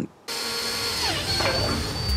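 Cordless drill boring a hole through the plastic front panel of a UPS. It starts suddenly about a quarter second in and runs steadily with a high whine.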